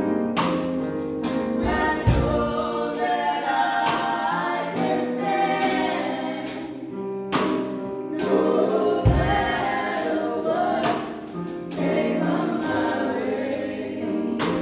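Gospel song sung by two women's voices over keyboard accompaniment, with sharp percussive hits through it.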